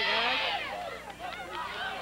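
Football crowd yelling and cheering during a play, many voices shouting over one another, loudest in the first half-second.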